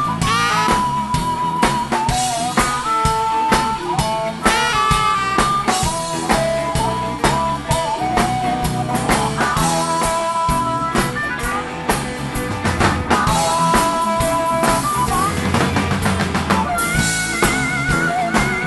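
Live blues band playing: drum kit, electric guitar and keyboard under a lead line of held, wavering notes, with a saxophone in the band. Near the end a higher lead line comes in as the harmonica starts.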